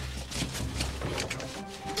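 Background music: a steady low bass under quick, repeated percussive ticks.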